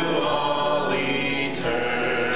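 Congregation and worship band singing a hymn together, with guitar and bass accompaniment. The voices hold a long note, then move on to the next about one and a half seconds in.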